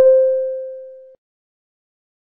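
German speaking-clock time-signal tone (the "Summerton"): a single beep, struck at once and fading away over about a second. It marks the exact moment the announced time, 10:56, is reached.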